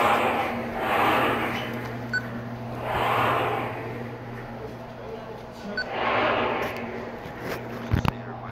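Indistinct voices in a large echoing room, swelling and fading about four times, over a steady low hum. A few sharp clicks come near the end.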